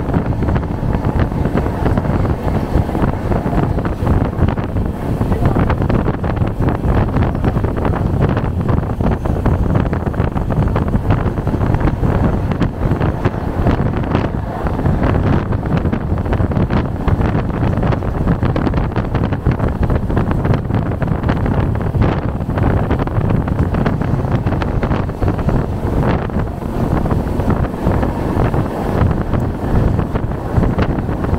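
Wind buffeting the microphone at the open door of a passenger coach, over the steady running noise of the train moving at speed along the track.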